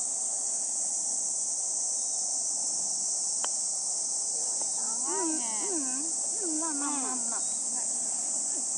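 A steady high-pitched insect chorus. About three and a half seconds in, a single sharp click as a putter strikes a golf ball. From about five seconds in come a few drawn-out, rising-and-falling vocal exclamations.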